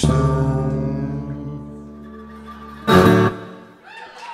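Weissenborn-style Hawaiian lap slide guitar sounding its closing chords at the end of a song. A full chord is struck and rings out, fading for about three seconds, then a second loud, short strike is cut off quickly.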